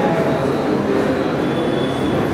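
Background chatter of many people talking at once in a crowded hall, a steady babble with no single voice standing out.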